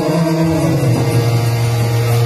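Harmonium reeds holding a steady sustained chord, whose low note steps down once about half a second in and is then held.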